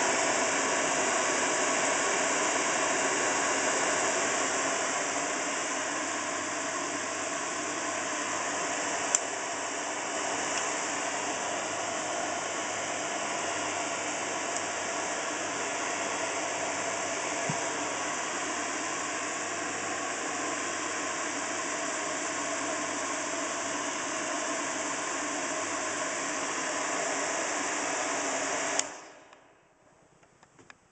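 Large Freeze-Breeze air rotor fan running at full mains power, a steady motor whir with air rushing out. Near the end the power is cut, because switching back to soft start without the restrictor fitted breaks the circuit, and the sound dies away within about a second.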